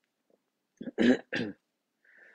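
A man clears his throat in a couple of short bursts about a second in.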